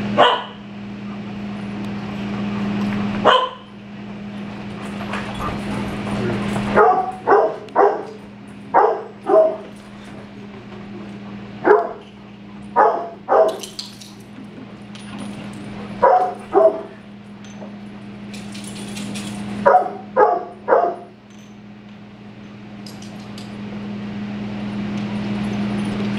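Dog barking in clusters of short, sharp barks, three to six at a time with pauses of a few seconds between, over a steady low hum.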